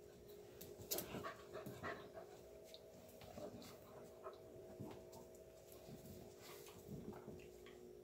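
Two Airedale terrier puppies play-fighting: faint panting and short scuffling taps, the loudest about a second in.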